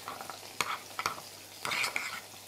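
Thin beef burger patties sizzling in a frying pan, a steady soft hiss, with a few light clicks and knocks at the counter and a louder rustle near the end.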